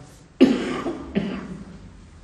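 An elderly man coughing twice into his cupped hands, two sharp coughs under a second apart, each tailing off.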